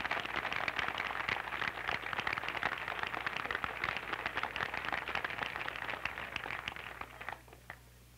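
Outdoor audience applauding, a dense patter of hand claps that thins out about seven seconds in and ends with a few last claps.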